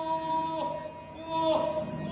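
Yakshagana ensemble music: a steady drone held on two pitches, with a few drum strokes about half a second in and again about a second later.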